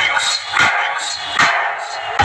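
A quick series of about five short, sharp barks, with the deep bass of the music cut out.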